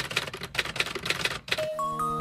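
Typing sound effect: a rapid run of key clicks as text types onto the screen, stopping about one and a half seconds in. Background music with light, bell-like notes begins near the end.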